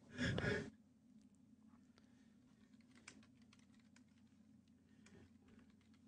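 Dead air on a radio broadcast: near silence after a brief sigh at the start, with a few faint clicks in the middle.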